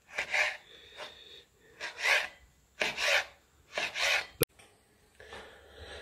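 Chef's knife slicing soft roasted red pepper into strips on a plastic cutting board: short rasping strokes of the blade through the flesh and onto the board, about one a second. A single sharp click about four and a half seconds in, then quiet.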